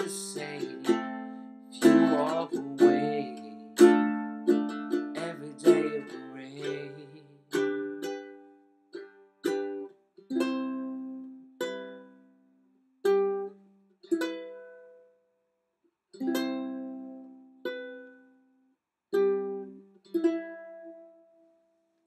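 Acoustic ukulele played alone. It is strummed densely for about the first six seconds, then thins to separate plucked notes and chords about once a second, each left to ring and die away with short silences between.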